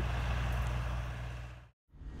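Farm tractor engine running at a steady low drone while discing a field, fading and then cutting off abruptly shortly before the end.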